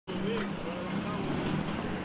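Car engine running at low speed with a steady hum as a car rolls past close by, over street noise, with faint voices in the background.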